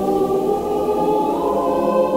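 Choral music: a choir holding long, sustained notes, the harmony moving to a higher chord about one and a half seconds in.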